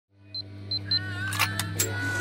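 Electronic sound effects of an animated intro: a steady low hum fades in, three short high beeps sound in the first second, and a few sharp mechanical clicks follow near the end.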